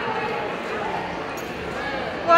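Indistinct distant voices over steady background noise, echoing in a large indoor hall.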